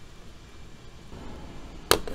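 Faint handling noise, then a single sharp click near the end.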